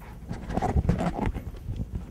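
Handling noise from a handheld wireless microphone being passed from hand to hand: irregular bumps and rubbing on the mic body, loudest between about half a second and a second and a half in.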